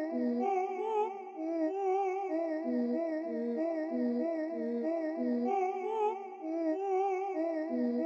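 Dark trap beat in a stripped-down break: a lone wavering melody line with vibrato plays a slow, repeating figure, with no drums or bass under it.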